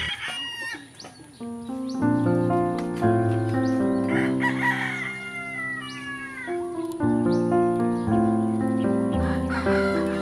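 A rooster crowing, once at the start and again with a longer falling call about four seconds in, over background music with steady, sustained chords.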